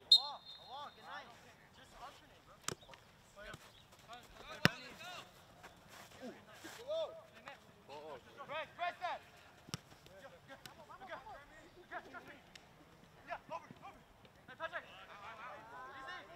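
Outdoor soccer match sound: a short high whistle blast right at the start, then scattered shouts and calls from players and spectators across the field, with a couple of sharp ball-kick thuds, the louder one about four and a half seconds in.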